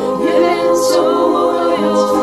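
Women's vocal ensemble singing a cappella in harmony, several voices holding long notes together. There is a sharp 's' sound a little before the midpoint, and the chord shifts near the end.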